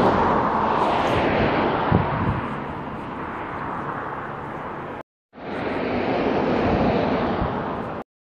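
Road traffic noise: a car passes close by, loudest in the first second or two, then a steady outdoor hiss and rumble. The sound cuts out briefly about five seconds in and resumes.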